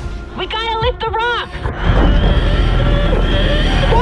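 A brief muffled, warbling voice, then from about halfway a loud deep rumble swells in under a thin sustained high tone: trailer score and sound design.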